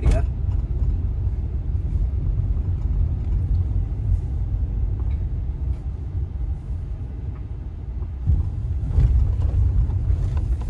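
In-cabin running noise of a Hyundai Venue turbo iMT (1.0-litre turbo petrol three-cylinder) on the move: a steady low rumble of engine and road, a little louder near the end.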